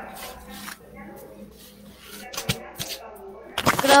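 Low, indistinct voices over a video call, with two short sharp clicks a little past halfway. A clear voice starts just before the end.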